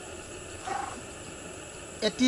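Quiet, steady outdoor background hiss, with one short faint pitched sound a little under a second in.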